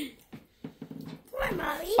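A dog whimpering in the second half: one drawn-out whine that dips and then rises in pitch.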